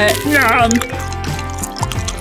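Background music, with a voice heard briefly at the start.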